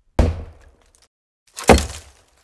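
A handheld microphone set down on a wooden table, heard as a thud through the microphone itself, followed about a second and a half later by a second, louder thud.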